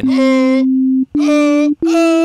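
Ableton Operator's plain sine tone layered with a pitched vocal sample played from a sampler, sounding notes that climb step by step like a scale, the first held about a second and the rest shorter. The two sounding in unison is the check that the sample is correctly tuned.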